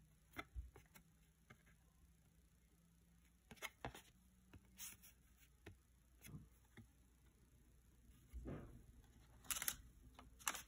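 Near silence with faint, scattered clicks and taps of fingers handling a thin cardboard trading card, and a few louder clicks near the end as the opened pack's wax paper wrapper is handled.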